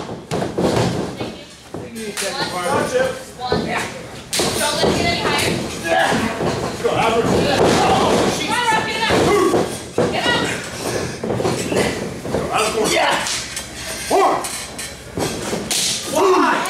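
Wrestlers' bodies and strikes hitting the ring mat and each other, giving repeated heavy thuds and slams, mixed with shouting voices in a large room.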